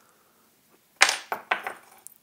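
Metal parts clinking as a bass drum beater is handled and fitted into a kick pedal's beater holder: one sharp metallic click about a second in, then two or three lighter clicks that fade.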